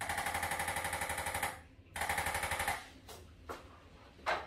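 Handheld electric chiropractic adjusting instrument firing rapid, evenly spaced taps in two bursts: a longer one at the start and a shorter one about two seconds in. It is being run over tight muscles and ligaments at the right hip. A few faint knocks follow near the end.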